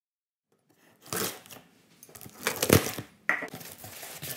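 Silence for about a second, then a cardboard shipping box and its crumpled kraft packing paper being handled: rustling, scraping and crinkling in irregular bursts, with a knock or thump nearly three seconds in the loudest.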